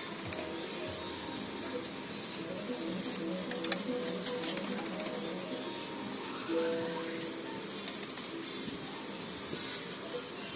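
Fruit machine's electronic reel-spin music, short held notes stepping in pitch over arcade background noise, with a few sharp clicks about three to four seconds in.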